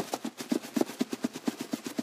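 A cardboard shipping box being shaken by hand, its contents knocking about inside in a fast run of short knocks, many a second.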